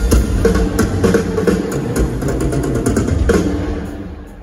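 Rock drum solo on a full drum kit, played live through an arena PA: a run of quick hits over a heavy low boom, growing softer near the end.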